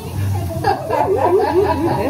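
A woman chuckling, a wavering, giggly laugh in the voice.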